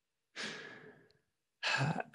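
A man's breathy sigh, fading out within about a second, then a short silence before his voice starts near the end.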